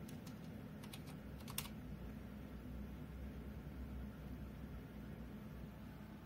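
Computer keyboard keys clicking as a PIN is typed in: about half a dozen quick keystrokes in the first two seconds, the last one the loudest, then only a steady low hum.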